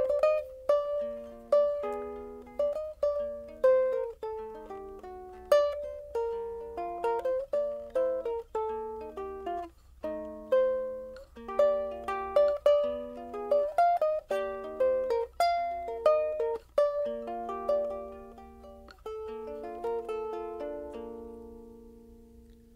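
Ko'olau CE custom electric tenor ukulele with a chambered quilted-maple body, played acoustically: a fingerpicked melody of single plucked notes and short chords. It ends on a chord left to ring out and fade.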